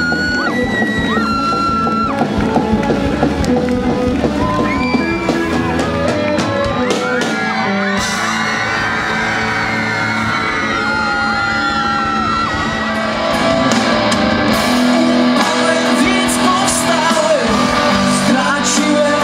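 Rock band playing live with electric guitars, drums and a lead singer, loud throughout and getting a little louder about two-thirds of the way through.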